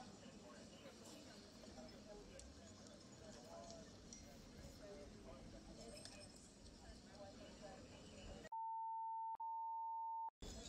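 Muffled body-camera background noise with faint, indistinct voices. Near the end it gives way to a steady high-pitched censor bleep, one pure tone that breaks off once for an instant, with all other sound muted beneath it.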